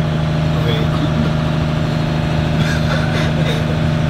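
Trawler's diesel engine running at a steady cruising drone, heard from inside the pilothouse.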